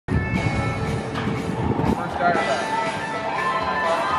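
Voices talking over background music with steady held notes.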